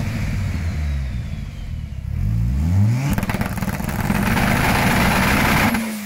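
Volvo sedan's engine running in the garage and being blipped. It revs up sharply about two to three seconds in, holds high revs loudly for nearly three seconds, and drops back toward idle near the end.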